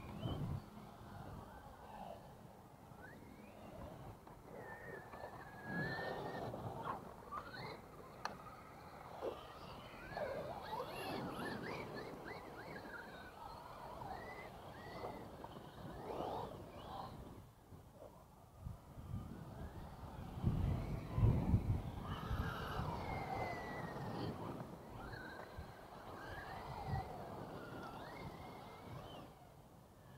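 Electric RC trucks running on a dirt track some distance off: brushless motors whining, their pitch rising and falling as the trucks speed up and slow down. A stronger low rumble comes about two-thirds of the way through.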